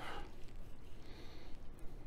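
A knife faintly sawing through a crusted smoked beef roast as a slice is carved off.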